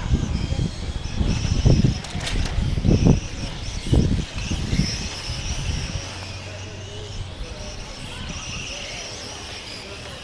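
Electric 1/10 M-chassis RC touring cars with 21.5-turn brushless motors whining as they race around the track, the pitch wavering up and down. Gusts of wind rumble on the microphone through the first half, then ease off.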